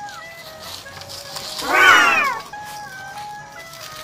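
Background music with a slow melody. About two seconds in, a single loud cat meow, falling in pitch and lasting under a second, sounds over it.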